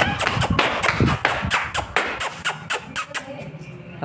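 Quick running footsteps on a concrete alley floor, about six a second, fading out in the last second.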